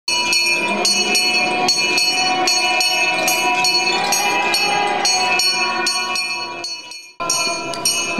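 Bells ringing rapidly and continuously, struck about every 0.4 s with the tones overlapping, breaking off for a moment about seven seconds in and then going on.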